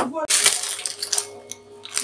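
Plastic bags of frozen food crinkling and rustling as they are handled, loudest in the first second and fading toward the end.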